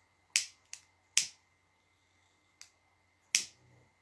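Five sharp, short clicks at uneven spacing, three of them loud, over a faint steady background hum.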